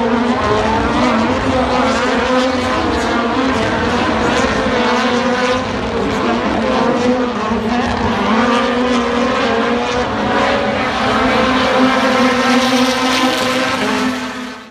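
Rallycross race cars racing around a circuit, their engines rising and falling in pitch as they rev through gears and corners, with a steady hum underneath.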